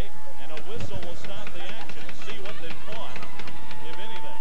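Ice hockey arena sound during live play: crowd voices and shouts with repeated sharp clacks of sticks, skates and puck on the ice. A long held tone starts about three and a half seconds in.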